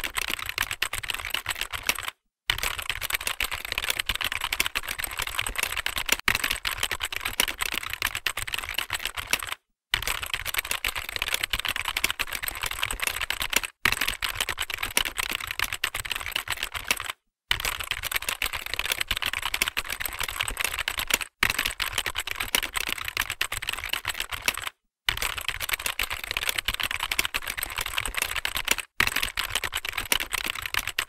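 Keyboard typing sound effect: rapid, continuous keystroke clicks, broken by several brief silent pauses.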